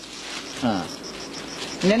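An insect chirping in a steady, high-pitched pulse, about five chirps a second, under the voices.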